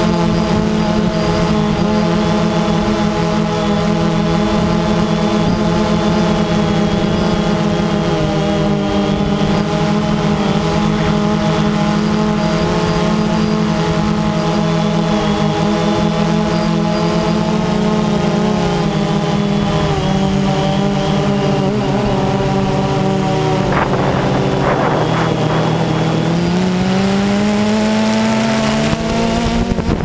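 DJI Phantom 2 quadcopter's four electric motors and propellers buzzing steadily in flight, heard loud and close from the camera mounted on the drone. About three-quarters of the way through there is a brief rush of noise, and the pitch dips and then climbs as the motors speed up.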